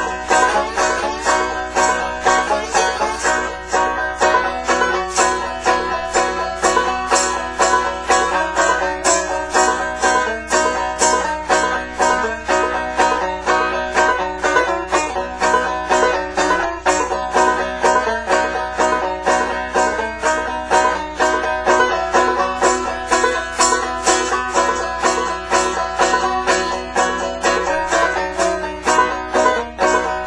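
Banjo played frailing style with a glass slide in a slow blues, the notes sliding in pitch over a steady strummed rhythm. A tambourine worked by foot keeps a steady beat.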